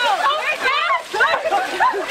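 Cold water pouring and splashing out of large coolers onto two seated people, while several voices shriek and yell over it.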